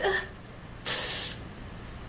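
A woman's short breathy exhale about a second in: an even hiss lasting about half a second.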